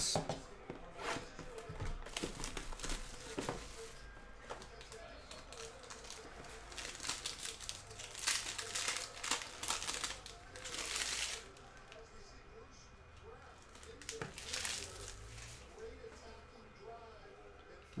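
Plastic shrink-wrap being torn off a sealed trading-card box and crinkled in the hands, in irregular bursts that are loudest about halfway through, with light clicks of the box and cards being handled.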